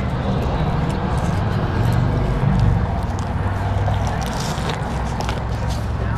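Chewing and wet mouth sounds of someone eating a lettuce-wrapped burger, with scattered small clicks, over a steady low rumble inside a car cabin.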